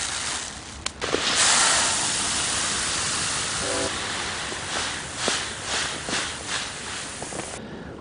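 Millet seed poured from a paper sack into the plastic hopper of a Scotts push broadcast spreader: a steady rush of falling grain that starts about a second in and cuts off near the end. At the very start there is a short trickle of seed dropped from the hands.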